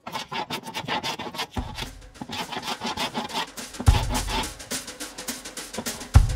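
Hand plane being pushed in quick repeated strokes across a glued pallet-wood panel, rasping through dried glue squeeze-out and wood fibres.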